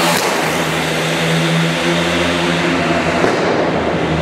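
Steady roar of a car driving through a concrete road underpass: engine hum and tyre noise with no change in pitch.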